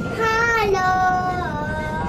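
A child's voice singing three held notes: the first wavers, then it steps up to a higher note and drops a little for the last. Under it runs the steady low rumble of the moving monorail car.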